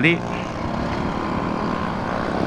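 Motorcycle running at steady road speed, its engine hum mixed with wind and road noise.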